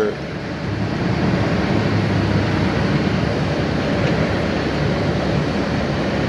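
Semi truck's diesel engine running steadily with a low hum as the truck creeps forward, heard from inside the cab.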